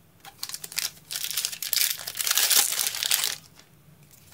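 A Pokémon trading card booster pack's foil wrapper crinkling as it is picked up and torn open. A few light crackles come first, then about two seconds of dense, loud crinkling and tearing that stops shortly before the end.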